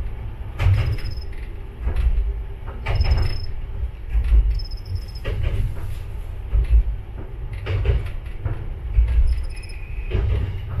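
Diesel railcar running along jointed single track: a steady low rumble, with the wheels knocking over the rail joints many times at uneven intervals.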